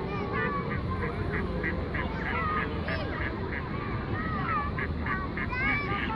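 Waterfowl on a pond giving a quick series of short calls, about three a second, mostly in the first half, with people's voices in the background.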